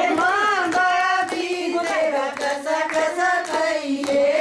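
A group of women singing a Haryanvi folk song together, with steady rhythmic hand-clapping keeping the beat.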